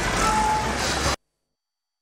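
Heavy earthmoving machinery (a bulldozer and a dump truck) running, with a low engine rumble and one short beep. It cuts off abruptly about a second in, followed by silence.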